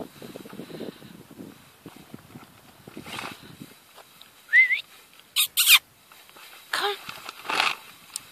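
A wirehaired dachshund working the ground with its nose: rustling in the grass, then a short high rising whine about halfway through, followed by two short, loud, sharp sniffs or snorts and a falling whine with more snuffling near the end.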